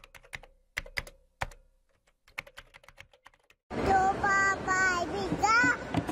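Keyboard-typing clicks, sparse and irregular, accompanying the text appearing on a title card, for the first three and a half seconds or so. Then a small child's high voice comes in loud, in a sing-song with gliding pitch.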